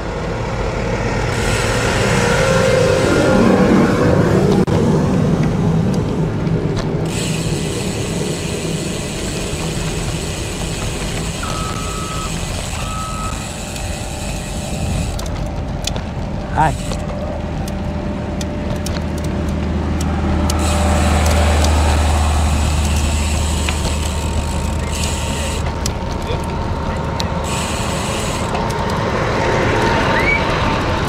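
Diesel engines of heavy road-resurfacing machinery (roller, trucks, motor grader) running close by. Two short electronic beeps sound about 12 s in, a sharp click comes just before 17 s, and a deep engine drone grows loud from about 17 to 24 s as a machine is passed.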